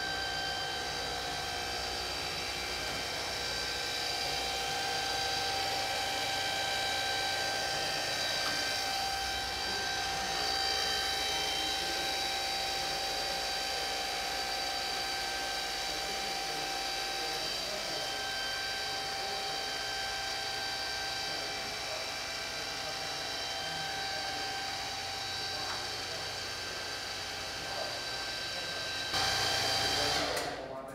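Home-built roll-forming machine running: an electric motor driving a riding-mower hydrostatic transmission that turns chain-linked forming wheels, making a steady hum and whine with several held tones as a rotor-blade skin is rolled through.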